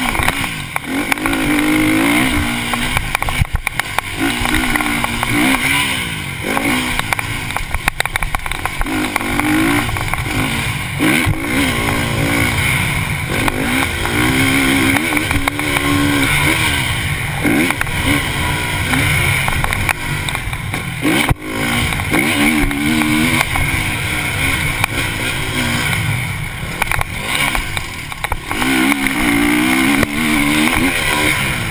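KTM motocross bike's engine revving up and easing off again and again as it is ridden, its pitch climbing and dropping every two to three seconds, over steady wind rush on the camera's microphone. A few sharp knocks stand out.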